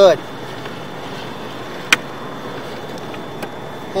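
Steady background hiss with one sharp click about two seconds in.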